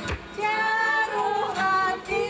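Women of a Māori kapa haka group singing a waiata together in long held notes, with a brief break just after the start.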